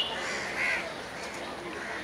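A crow cawing, two short calls about half a second apart, over steady outdoor background noise.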